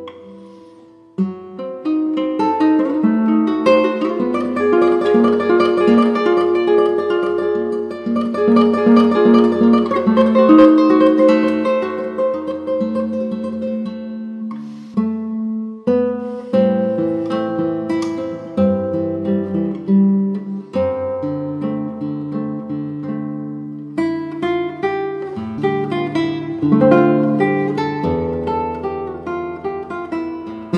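Solo classical nylon-string guitar playing plucked melody and chords over ringing bass notes. There is a brief break about a second in and short pauses around the middle.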